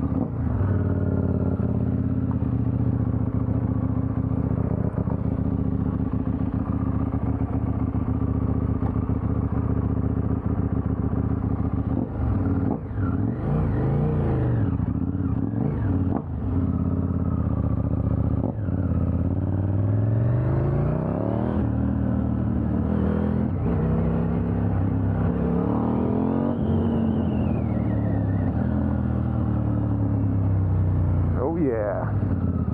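KTM 890 Duke R's parallel-twin engine running steadily at idle, then revving as the bike pulls away a little under halfway in. Its pitch climbs and drops several times through the second half as it accelerates through the gears.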